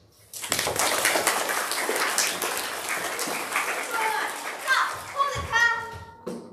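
Many children's voices at once, a loud overlapping hubbub of shouting and chatter that starts suddenly just after the music stops. About five seconds in it gives way to a single child's raised, drawn-out voice.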